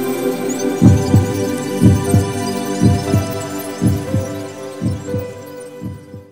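Ambient electronic music: sustained synth pad chords, joined about a second in by a heartbeat-like low double thump that repeats about once a second. It fades away near the end.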